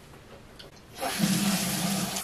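Water running from a bathroom tap as a face wash is rinsed off, starting suddenly about a second in after a quiet moment.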